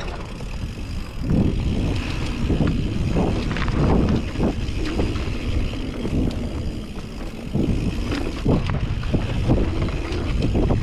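Mountain bike riding down a dirt singletrack: tyre noise on the dirt, with repeated short knocks and rattles from the bike over bumps and a low wind rumble on the microphone.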